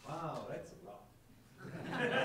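People's voices in the room: a short stretch of untranscribed speech, a brief pause, then speech starting again near the end.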